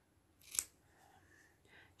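Small scissors snipping through the wool yarn of a pompom: one crisp snip about half a second in and a fainter one near the end.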